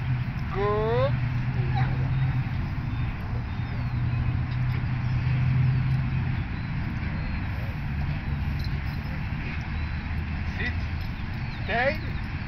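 A dog whining briefly, a short rising cry about half a second in and another near the end, over a steady low rumble.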